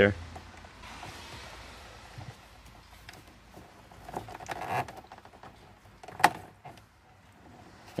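Plastic wiring connector being worked off a 1987–93 Mustang headlight switch by hand: quiet plastic rubbing and rattling, with one sharp click about six seconds in as the connector's locking clip is pushed loose.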